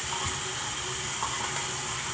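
Water running steadily from a tap into a sink as hands are washed, a constant hiss.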